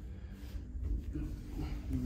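Two grapplers' bodies shifting and rolling on a foam mat as one rolls through a leg lock, over a steady low rumble of room noise, with a faint vocal sound in the last second.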